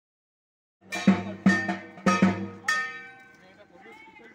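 Struck metal percussion, about five sharp strikes in under two seconds, each ringing with clear sustained tones that fade away near the end.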